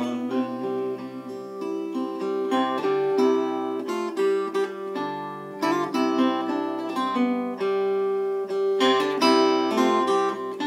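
Solo acoustic guitar playing an instrumental passage: plucked chords and melody notes, each ringing on under the next.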